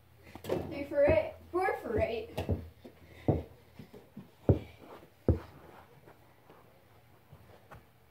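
A brief, indistinct voice, then a few separate sharp thuds: a basketball being shot at a plastic toy basketball hoop and dropping onto carpet.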